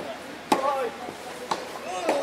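Tennis ball struck by racket during a rally, two hits about a second apart. A short vocal grunt follows the first, louder hit.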